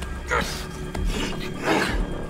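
Two rasping, strained breaths from men struggling in a chokehold, one about half a second in and a longer one near the end, over a low music underscore.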